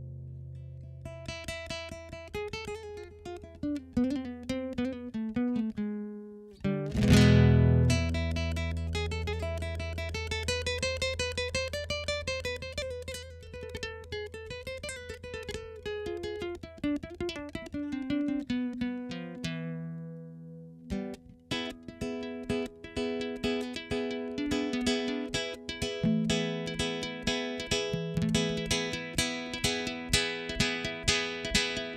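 Solo nylon-string classical guitar played fingerstyle: single plucked notes over ringing bass notes, with one loud struck chord about seven seconds in. From about two-thirds of the way through it moves into a quick, steady run of repeated plucked notes.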